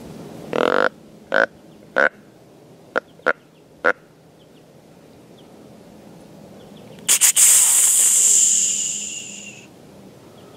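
Hunter's deer calling to a whitetail buck: six short, loud nasal call blasts in the first four seconds, then, about seven seconds in, three quick sharp spurts that run into a long drawn-out hiss, the pattern of an aggressive snort-wheeze.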